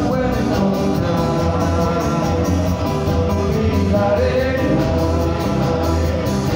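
Live gospel band music: voices singing a melody over guitar and bass, with a steady beat.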